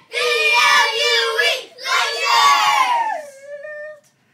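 A group of young boys shouting a team cheer in unison: two long, drawn-out shouts, the second sliding down in pitch and trailing off near the end.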